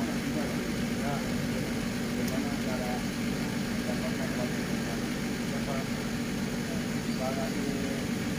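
A steady low machine hum, like an engine or compressor running at a constant idle, with faint voices in the background.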